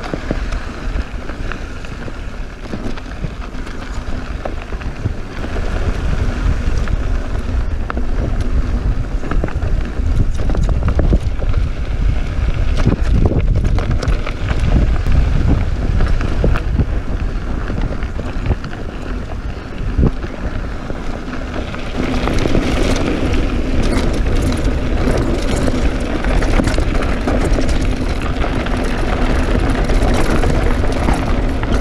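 Wind buffeting the microphone of a mountain bike descending a loose dirt trail, with the tyres crunching over gravel and the bike rattling. The gravel crunch and rattling get louder in the last third.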